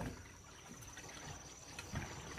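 Faint, steady trickle of water running into a fish pond, a supply that flows continuously day and night.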